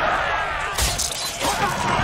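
Film battle sound mix: a loud, dense din of shields and weapons clashing in a melee, with men shouting.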